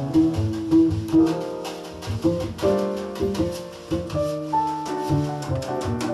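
Jazz piano trio playing: grand piano, double bass and drum kit, with a steady pulse of short strokes from the drums over moving piano and bass lines.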